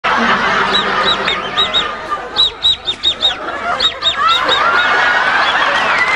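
A man laughing hard in high, squeaky wheezes, several short bursts a second, ending in a long rising wheeze.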